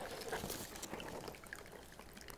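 Faint, steady trickle of a small tabletop water feature: a little pump pushes water up through tubing in a drilled rock, and it falls over the rock back into its reservoir.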